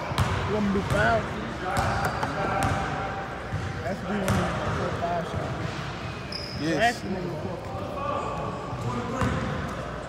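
A basketball bouncing on a hardwood gym floor, a few separate bounces ringing in a large echoing hall, under background voices.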